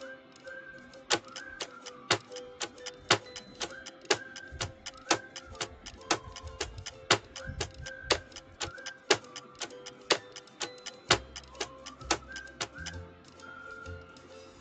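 Countdown timer sound effect ticking like a clock, a sharp tick about once a second with quicker, fainter ticks between, over soft background music.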